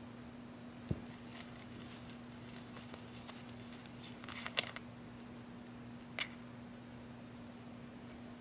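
A flashlight's anodized-aluminium head being unscrewed from its body by hand: a soft knock about a second in, then a run of faint clicks and scrapes from the threads and fingers, and one sharper click near the end as the head comes free. A steady low hum sits underneath.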